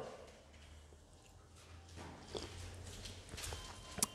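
Faint soft rustles and light knocks in the second half, the pages of a Bible being leafed through to find a passage, over a low steady hum.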